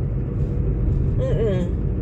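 Steady road and engine rumble inside a moving car's cabin, with a brief hummed vocal sound from the driver about one and a half seconds in.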